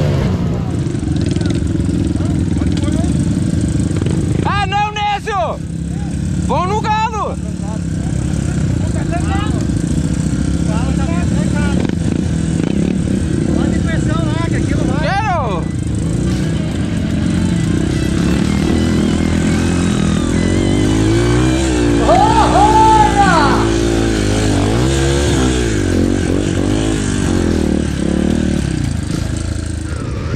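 Several off-road dirt-bike engines running, revving up and down a few times, most strongly a little after the middle.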